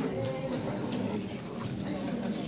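Indistinct background voices, with scattered light clicks and knocks.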